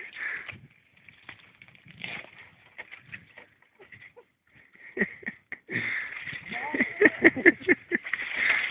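People laughing in short bursts, with a quiet stretch of a few seconds in the middle; the laughter returns about five seconds in, with a couple of sharp clicks near the end.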